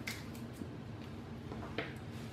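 Faint handling sounds of artificial flower stems and greenery being worked by hand over low room noise, with one short soft click near the end.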